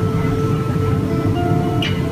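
Folk band playing a short instrumental passage between sung verses, with held notes over a steady low background hum, as re-recorded on a phone from a museum's playback.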